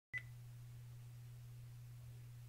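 A single short, high electronic beep right at the start, followed by a faint steady low hum and room hiss.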